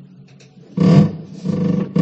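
A goat bleating in repeated loud calls, the strongest about a second in.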